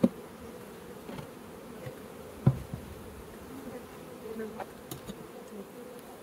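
Honey bees buzzing steadily around a small hive, a continuous hum. A light knock sounds right at the start and another about two and a half seconds in.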